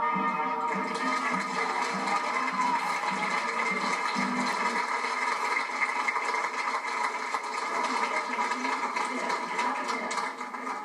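The last notes of a song fade out in the first second or so and are followed by steady audience applause, heard through a TV speaker.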